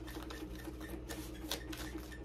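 A deck of tarot cards being shuffled by hand: a quick, irregular run of soft card flicks and taps, about four or five a second.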